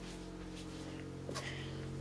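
Subwoofer playing a steady low bass test tone of about 45 Hz, heard faintly with a hum of overtones above it.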